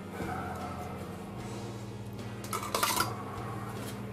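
Metal tongs clinking against a stainless-steel platter and the pot, a short cluster of clicks about three seconds in, as duck confit legs are lifted out of their cooking fat.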